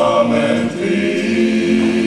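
Men's gospel vocal group singing in close harmony, several voices holding long notes together.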